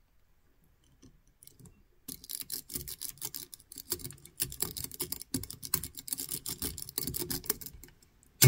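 Steel wave rake being worked rapidly in and out of the keyway of a cutaway Wilson Bohannon brass padlock, giving fast, uneven clicking and scraping over the pin tumblers. The clicking starts about two seconds in and runs on until just before the end.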